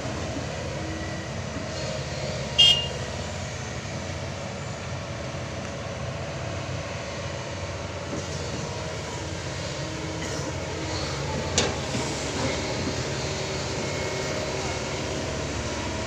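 Kobelco SK220XD hydraulic excavator's diesel engine running steadily under load as it digs and swings. A sharp metallic clank with a short ring comes about two and a half seconds in, and another sharp knock near twelve seconds in.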